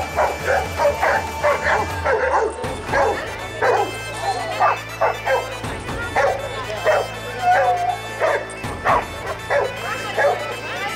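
Bernese mountain dogs barking and yipping over and over, about three barks a second, over background music with held low notes.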